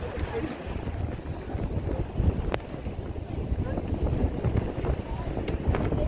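Wind buffeting the microphone over the wash of sea waves breaking on rocks below. There is one sharp click about two and a half seconds in.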